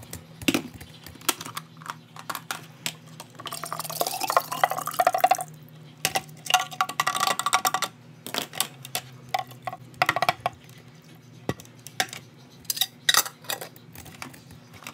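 Thick blended ginkgo-leaf and vodka mixture being poured from a plastic blender jar into a large glass jar, in two spells of pouring in the middle, with the blender jar knocking and clinking against the glass. A few sharp clicks near the end as the lid goes on the jar.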